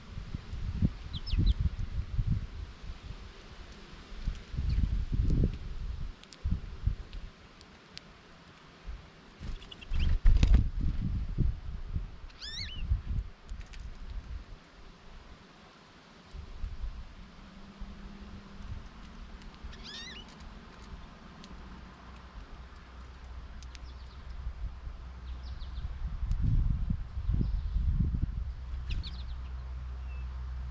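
Wild birds at a feeder giving a few short, high, downward-sliding chirps, with low rumbling bumps close to the microphone, loudest near the start, about ten seconds in and near the end.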